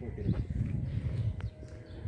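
Outdoor handheld phone recording of someone walking: footsteps on pavement over a low, uneven wind rumble on the microphone, with one sharp click a little after the middle.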